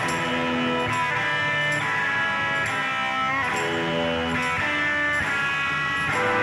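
A live band plays a slow electric blues led by electric guitar, with sustained chords changing about once a second and no singing.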